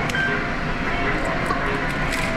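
Medal-game arcade din: many machines' electronic tunes and effects blended into one steady wash, with a few sharp clicks in the second half.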